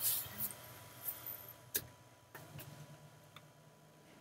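Quiet room tone with a few faint, irregularly spaced clicks and soft rustles.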